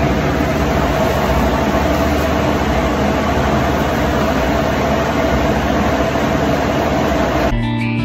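Loud, steady machine noise with a constant hum running under it. Near the end it cuts off and electric guitar music starts.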